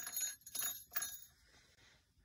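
A few short knocks and rustles with a light, thin ring, spread over the first second and a half and then fading: handling noise from the camera being moved around.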